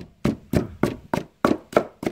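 Wooden pestle pounding lemongrass and chilies in an earthenware mortar to make a spice paste, a steady run of strokes about three a second.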